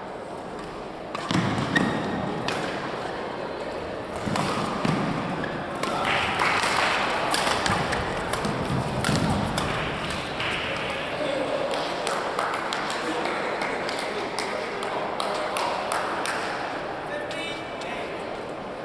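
Badminton doubles rally in an echoing hall: sharp racket strikes on the shuttlecock begin about a second in and come quickly one after another, with players' and spectators' voices throughout.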